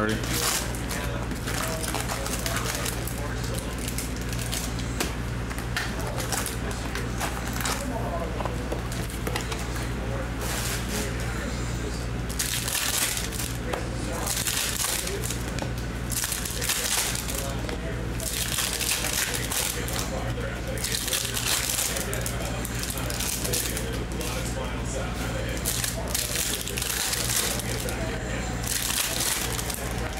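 Foil trading-card pack wrappers crinkling and tearing as packs are ripped open and the cards handled, in repeated bursts that come thickest in the middle and near the end, over a steady low hum.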